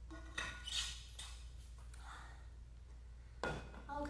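Quiet handling sounds from drinking out of a water bottle and moving on the mat: a short breathy sound about half a second in, then a single knock shortly before the end.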